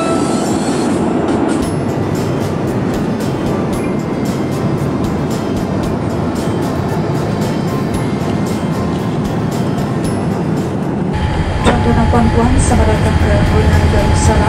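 Steady rushing cabin noise of a Boeing 787 airliner, with many scattered short clicks. About eleven seconds in it changes abruptly to a louder low rumble with a steady hum, and a voice starts speaking.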